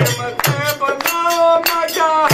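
Men singing a Bhojpuri devotional bhajan with held notes, over a steady beat of hand percussion striking about two to three times a second.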